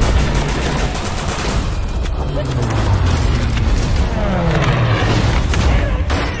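Staged battle soundtrack: rapid gunfire and low booming explosions. A few falling tones sweep down about four to five seconds in.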